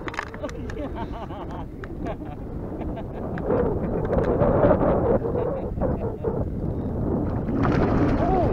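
Wind buffeting the microphone, a low rumble throughout, with laughter at the start and muffled voices in the middle.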